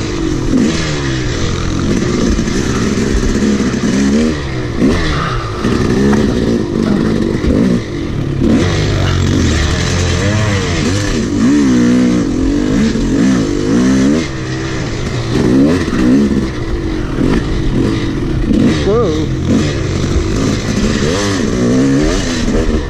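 Yamaha YZ250 two-stroke dirt bike engine revving hard and easing off over and over, its pitch rising and falling every second or two as the rider works the throttle on a tight trail.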